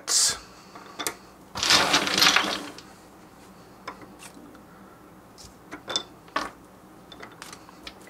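Wooden Lincoln Logs toy pieces clicking and knocking against each other as they are picked from a pile and fitted onto a small log frame on a tabletop. A short sharp knock at the very start, a louder, longer clatter about two seconds in, then scattered light clicks.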